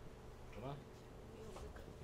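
Faint room noise with a low steady buzz, and a brief faint voice in the distance about halfway through.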